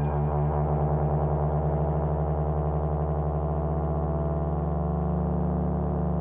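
Tenor saxophone and euphonium holding long, low notes together, a steady drone with a fast wavering beat running through it.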